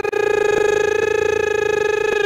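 A commentator's voice holding one long, high shouted note through a distorting microphone, with a fast tremble in its loudness: a drawn-out goal call.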